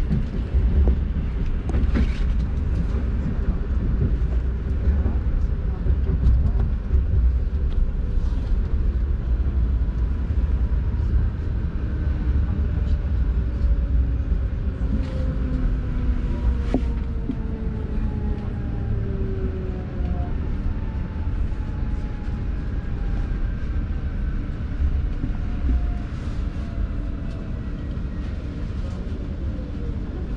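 Lastochka ES2G electric train heard from inside the carriage: a steady low rumble of the wheels on the rails, with a few clicks over rail joints. From about ten seconds in, a whine of several tones slowly falls in pitch as the train brakes into a station.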